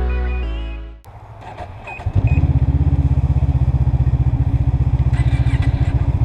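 Background music fades out in the first second. After two short beeps, a snowmobile engine runs steadily from about two seconds in, heard up close from the sled, with a fast, even pulse.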